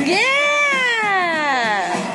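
A single long vocal cry whose pitch rises sharply and then slides slowly down over almost two seconds, louder than the music around it.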